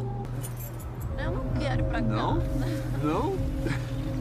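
Wordless vocal sounds, a voice gliding up and down in pitch, over background music holding steady low notes.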